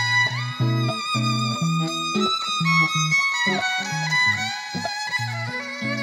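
Electric violin playing a smooth, sustained melody with pitch slides, over a backing track with a rhythmic bass line.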